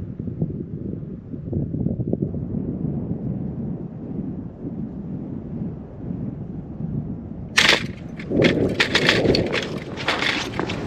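Low wind rumble on the microphone, then about three quarters of the way in a sudden sharp crack followed by irregular crunching steps on the snow-crusted pond ice.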